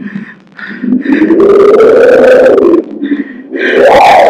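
A person's long, drawn-out vocal cry of about two seconds, rising and then falling in pitch, with a few short vocal sounds just before it.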